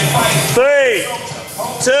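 Upbeat background music that cuts off about half a second in, then a man's drawn-out, sing-song countdown shouts about a second apart, the second heard as "two".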